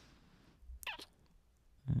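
A soft, close-miked kiss: one brief squeaky smack about a second in, over faint low rustling, with a hummed "mm-hmm" beginning right at the end.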